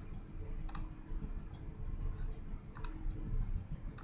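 A few sharp computer mouse clicks: one about a second in and a quick double click near three seconds, over a low steady background rumble.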